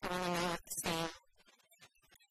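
A woman's voice at a desk microphone: two short syllables at a nearly steady pitch within the first second.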